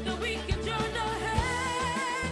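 A group of children singing a song over a backing track with a bass line and a drum beat.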